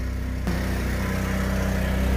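Portable generator running steadily inside an aluminium checker-plate box lined with 10 mm acoustic board, a constant low engine hum that the lining has quieted down a bit.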